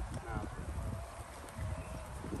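Bicycle tyres rolling over bumpy grass: a low, uneven rumble with soft thumps.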